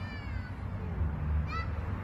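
Faint, distant high-pitched shout of a child calling across the field, falling in pitch, once near the start and again briefly about one and a half seconds in, over a low rumble of wind on the microphone.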